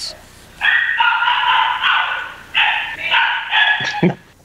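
A dog howling: one long high cry and then several shorter ones, louder than the voices around it.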